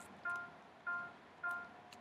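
Finale notation software playing back each quaver as it is entered: three short, identical tones on one pitch, a little over half a second apart, each fading quickly.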